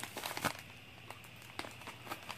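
Plastic mailer package crinkling and crackling as a small knife cuts it open and hands work the wrapping: scattered short crackles, busiest in the first half second and sparser after.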